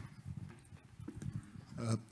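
Faint hall room tone with a few soft knocks and clicks, the sharpest click right at the start. A man's voice starts near the end.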